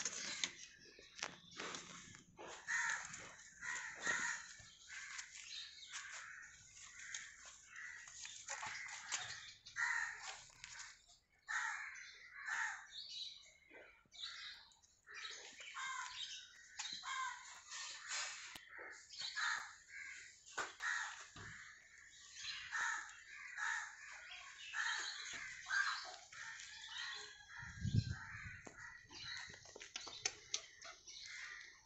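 Birds calling over and over, short calls close together and overlapping. A low thump near the end.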